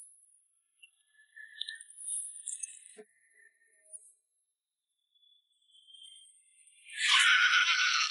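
Animated sound effects: faint chiming, twinkling tones and a single click in the first few seconds, then a loud, rough, rushing burst starting about seven seconds in.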